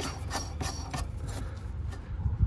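The threaded spring-seat collar of a coilover being wound by hand along the threaded shock body: a string of light, irregular metallic clicks and scrapes.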